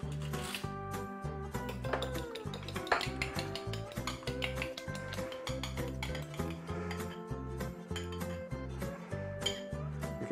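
Background music, with a fork clinking rapidly and repeatedly against a ceramic bowl as an egg is beaten.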